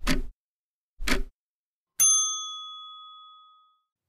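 Countdown timer sound effect: a tick once a second, twice, then a single bell ding about two seconds in that rings out and fades, marking the end of the time to answer.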